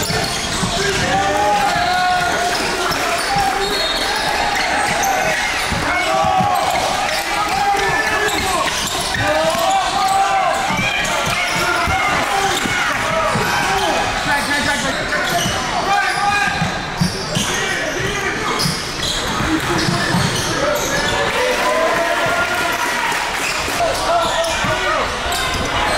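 Basketball dribbled on a hardwood court, the bounces echoing in a large gym, over continual voices of players and spectators.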